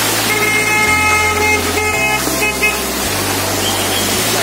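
A waterfall's steady rush of water, with background music over it: low bass notes that change about once a second and sustained chord tones in the first few seconds.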